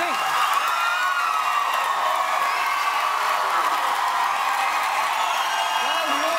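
Large studio audience cheering, whooping and applauding, a steady din of many voices and clapping.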